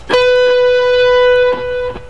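Clean electric guitar playing a single note, the 12th fret on the B string, picked about a tenth of a second in and held steadily for about a second and a half before it stops.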